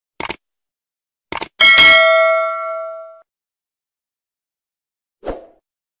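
Subscribe-button animation sound effects. Two quick mouse clicks come just after the start and two more about a second later, then a bright bell ding rings out for about a second and a half. A short soft thump comes near the end.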